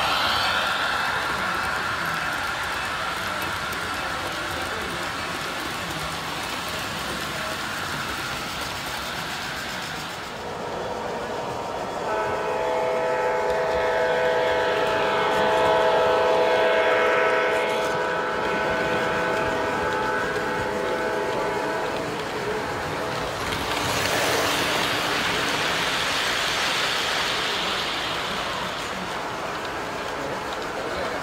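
O gauge model diesel locomotives running on the layout, with the wheels and motors rumbling steadily; about a third of the way in, a model locomotive's sound system sounds a multi-chime diesel horn, held for about ten seconds.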